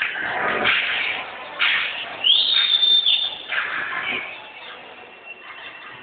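Shouting and cheering voices echoing in an indoor sports hall, with a shrill high note that rises and holds for about a second near the middle.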